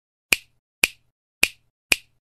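Four sharp finger snaps, about two a second, each short and crisp with silence between.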